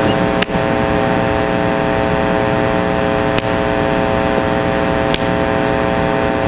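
A steady electrical hum made of several fixed tones, over an even hiss. Faint clicks come a few times.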